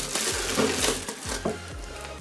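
Plastic bubble wrap crinkling and rustling as a wrapped lens is handled and drawn out of a cardboard box, with a few light clicks and knocks. It grows quieter in the second half.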